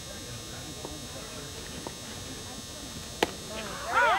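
Quiet outdoor ballfield ambience with faint distant voices. About three seconds in, a single sharp crack as the pitched baseball is struck or caught. A voice starts to shout just before the end.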